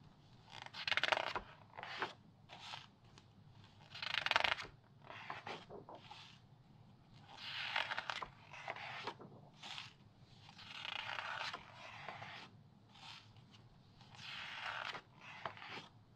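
Glossy magazine pages turned by hand, one at a time: five page turns about three to four seconds apart, each a swish of paper lasting about a second, with lighter crisp rustles of the pages between them.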